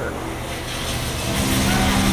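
Steady low hum and general background noise of a large indoor exhibition hall. A steady low drone comes in about one and a half seconds in.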